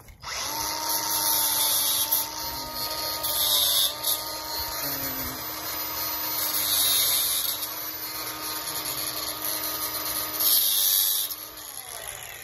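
A cordless cut-off tool (compact grinder) starts up and runs at speed with a steady whine, hissing sharply several times as the disc cuts into the steel fence wire. It winds down just before the end.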